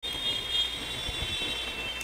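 Steady background noise picked up by a computer microphone: a low rumble under a high-pitched whine, starting and cutting off abruptly.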